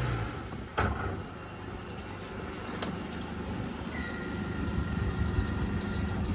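Honda 115 hp four-stroke outboard idling smoothly just after starting, a steady low running sound. A sharp click comes about a second in, and a faint high whine joins at about four seconds.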